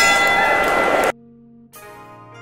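A loud sound effect lasting about a second that cuts off suddenly, followed by light plucked-string background music.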